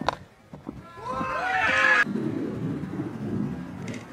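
Spectators yelling and cheering loudly for about a second as a catch is made. The cheering cuts off abruptly and gives way to a lower murmur of crowd voices.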